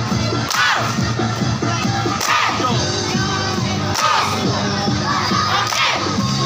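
A group of young voices shouting in unison, four shouts a little under two seconds apart, each falling in pitch, over the noise of a large crowd and faint background music.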